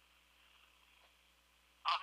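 Faint, steady telephone-line hiss with nothing else on the line, then a man's voice comes in over the phone near the end.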